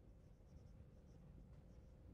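Faint marker writing on a whiteboard, a string of short, thin squeaks over quiet room hum.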